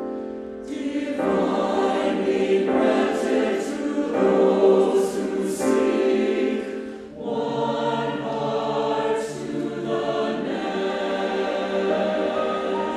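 Background music: a choir singing a slow piece, coming in a little under a second in after a piano passage.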